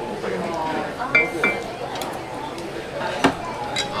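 Chopsticks clinking against bowls: a few sharp clinks, one ringing briefly, over low voices.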